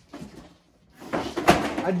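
Rummaging through clutter, with a sharp knock about one and a half seconds in; a voice starts just before the end.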